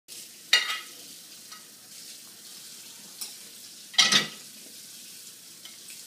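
Golden retriever licking dirty dishes, a steady wet licking with two loud clatters of dishes knocking together, about half a second in and again about four seconds in.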